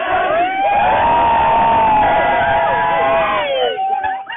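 A crowd of football supporters chanting together, voices rising into one long held note that falls away near the end.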